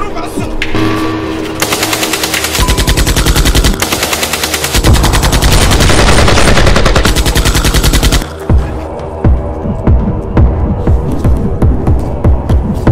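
Rapid automatic gunfire in long sustained bursts over background music, loudest in the middle of the stretch. About eight seconds in it stops abruptly, leaving the music with a pulsing beat and scattered thumps.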